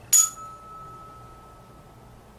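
Tuning fork struck once with a sharp metallic clink, then ringing with one steady tone for almost two seconds as its stem rests on the patient's forehead for a Weber hearing test.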